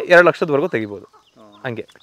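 A man talking, with a country hen clucking briefly and faintly in a pause about a second and a half in.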